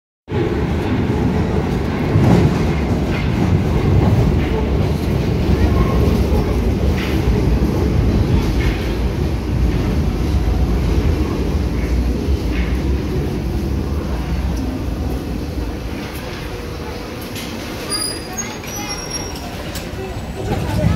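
Paris Métro train running into the platform, a loud steady low rumble that gradually eases as it slows. A few brief high-pitched tones come near the end.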